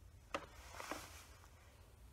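Faint handling sounds of a ribbon being tied around a plastic drinking straw: a light click about a third of a second in, then a soft, brief rustle with a fainter click.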